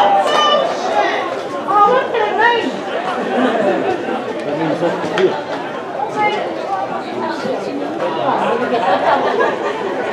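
Many voices chattering at once, overlapping, with no single voice standing out.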